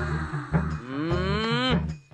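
A man's long, drawn-out wailing cry that rises in pitch and cuts off near the end, over the steady low beat of background music.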